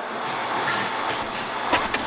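Steady hiss of static on a phone line, with no voice answering.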